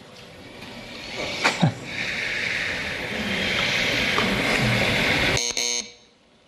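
Game-show sound cue during the solve attempt: a hissing tone that swells for several seconds, ending in a short electronic buzzer about five and a half seconds in that cuts off suddenly.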